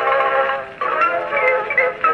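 Edison Model A Fireside phonograph playing a 1909 Indestructible cylinder recording of a xylophone solo through its horn. A held chord gives way about a second in to quick runs of separate notes.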